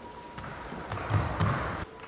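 Bare feet shuffling and slapping on tatami mats, then two heavy thumps about a third of a second apart as the thrown partner lands on the mat in a breakfall after a shihonage throw. The sound cuts off suddenly near the end.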